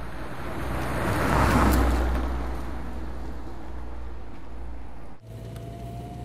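Vintage police saloon car driving along a road, its engine and tyre noise swelling to a peak about a second and a half in and then easing off. Just before the end it gives way abruptly to a steadier engine hum heard from inside the car.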